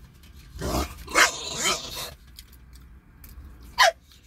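Bulldog barking for food: a short run of barks about a second in and one more just before the end.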